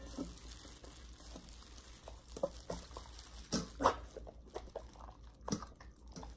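Samoyed eating boiled chicken from a gloved hand: scattered wet smacks and clicks of its mouth as it gulps the pieces, with louder ones a little before four seconds and about five and a half seconds in.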